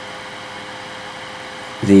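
Steady background hum and hiss with a faint steady tone, and no other sounds. Near the end a man's voice comes in with a drawn-out "the".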